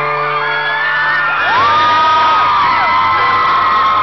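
Live acoustic guitar and keyboard playing a song's intro with sustained chords, while fans in the crowd scream and whoop over it in long, high, rising-and-falling shrieks, loudest around the middle.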